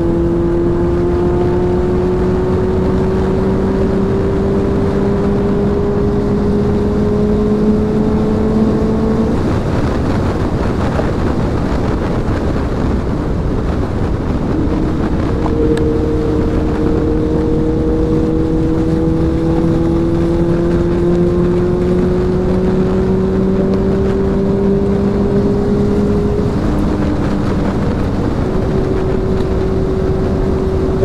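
Honda CBR650F's inline-four engine at highway speed, its note rising slowly as the bike pulls, under constant wind rush on the microphone. The engine note fades under the wind about nine seconds in, comes back about six seconds later and climbs again, then dips briefly near the end.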